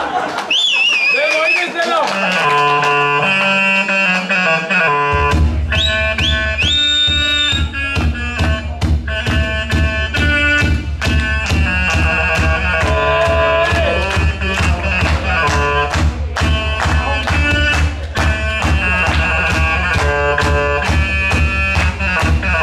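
Live band music on homemade instruments: a saxophone built from pipe plays wavering opening notes, then about five seconds in a steady beat and bass come in under the melody for a dance.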